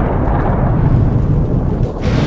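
Loud, deep rumbling noise, heaviest in the bass, easing slightly near the end.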